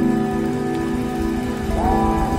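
Live jam band playing: a sustained chord over pulsing bass and drums, with notes bending upward near the end.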